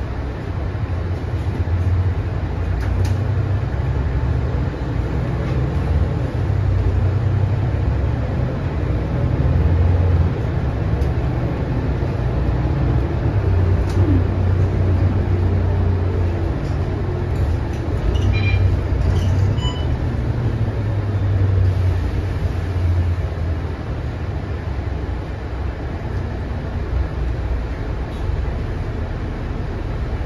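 Mercedes-Benz O530 Citaro single-decker bus heard from inside the cabin, its diesel engine and drivetrain running with road noise as it drives. The engine note swells and eases in stretches as the bus pulls away and gathers speed, then settles as it slows near the end. A few brief, faint high-pitched tones come about two-thirds of the way through.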